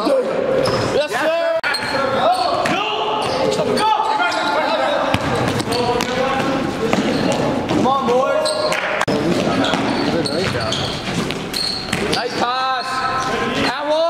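Live indoor basketball game: a basketball bouncing on the hardwood court, short high sneaker squeaks and players' voices, all echoing in a gym.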